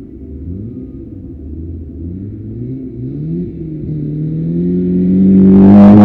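Rally car engine at full throttle, its pitch climbing and dropping back with each gear change as it comes on. It grows steadily louder and is loudest as the car passes close by near the end.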